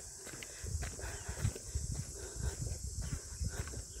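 Irregular low thumps and rumbling close on a handheld phone's microphone, with no steady rhythm.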